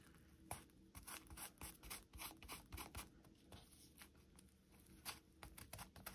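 Very faint, irregular rustles and light taps of paper as fingers press and smooth glued fabric-tape tabs onto a paper envelope.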